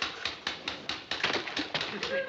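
Rapid, irregular clacking of a wooden stirring stick knocking against the side of a metal bucket as patching plaster is mixed.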